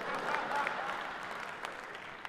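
Live theatre audience applauding, the clapping slowly fading.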